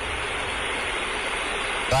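Steady, even rushing noise of a surveillance aircraft's cockpit recording: engine drone and radio hiss between the crew's transmissions.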